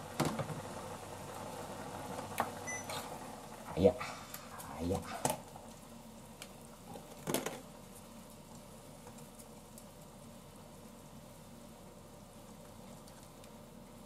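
A few light clicks and knocks as curry roux blocks are put into a saucepan of simmering broth and stirred with chopsticks, then a faint steady simmer.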